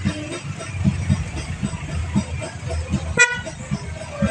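A short, sharp vehicle horn toot about three seconds in, over a steady background of engines, voices and music.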